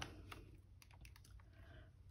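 Faint, scattered plastic clicks from a Texas Instruments TI-30XS MultiView calculator as it is handled and its keys are pressed.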